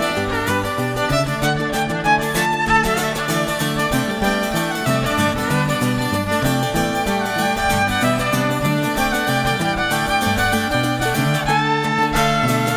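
Fiddle playing an instrumental break over strummed string accompaniment, with plucked low notes stepping underneath.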